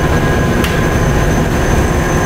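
Steady machine rumble and hum of the running vacuum system and cleanroom equipment around the e-beam evaporator, with constant high tones over it and a faint tick about two-thirds of a second in. The high-vacuum valve has not yet closed.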